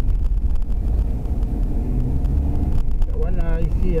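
Steady low rumble of a car's engine and tyres on the road, heard inside the cabin while driving. A voice starts speaking near the end.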